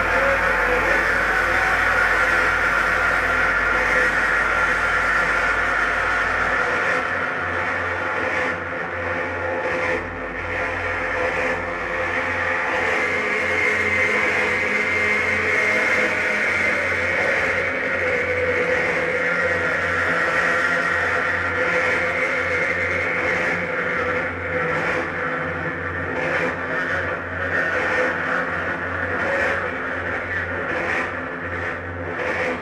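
Live industrial noise music: a loud, dense electronic drone of layered held tones over a low hum. The deepest bass thins out about seven seconds in.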